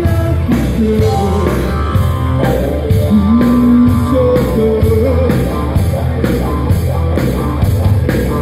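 A live rock band playing: a lead singer over electric guitars, bass, keyboards and a drum kit. The drums keep a steady cymbal beat, and the singer holds one long note about three seconds in.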